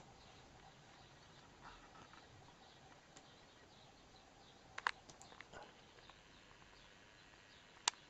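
Very quiet room tone with a few faint sharp clicks: a pair about five seconds in, some softer ticks after them, and one more just before the end.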